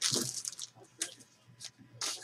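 Trading cards being handled: soft rustling and sliding of card stock with a few light ticks, one about a second in.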